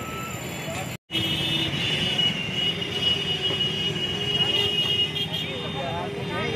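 Busy street traffic noise at a road crossing, broken by a short cut to silence about a second in. After the cut a steady high-pitched electronic tone, with a fainter low one, runs under the traffic.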